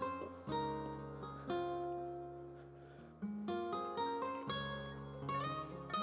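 Background music: an acoustic guitar plucking slow chords, each one struck and left to ring out and fade before the next.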